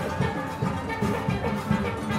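A steelband playing live: steel pans ringing out a melody over a percussion rhythm section with a steady beat.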